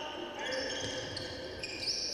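Basketball being dribbled on a hardwood court during live play, with court squeaks and voices around the arena.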